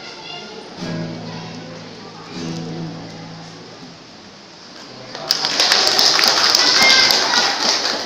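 A vocal group's last held notes fading out, followed about five seconds in by an audience applauding loudly.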